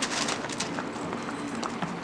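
A donkey's hooves clopping on a paved road in irregular steps, with a brief burst of noise at the start.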